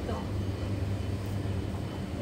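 Steady low hum of a running kitchen appliance, with no distinct knocks or clinks.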